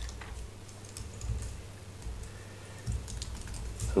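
Typing on a computer keyboard: a scattering of light, irregular keystrokes.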